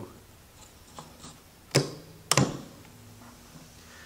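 Two sharp clicks about half a second apart as the air flow control knob on a Miller FiltAir 130 fume extractor is turned, with a few lighter ticks before them. After the clicks comes a faint steady hum from the extractor running on a low flow setting.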